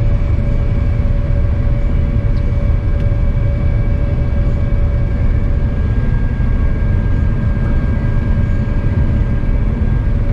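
Claas Lexion 8800TT combine harvester running under load while harvesting, heard from inside its cab: a loud, steady deep rumble with a thin steady whine over it.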